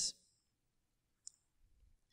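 Near silence, broken once, about a second in, by a single short click.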